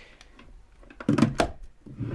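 A wooden desk drawer handled and pushed shut with a hairdryer in it: light rustling, then two sharp knocks just over a second in.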